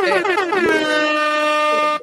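A loud, buzzy horn-like tone that warbles rapidly up and down, then settles into one steady held note and cuts off suddenly.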